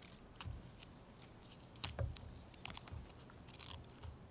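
Scattered short crackles and rustles of a roll of tape being handled and pulled, the loudest about two seconds in.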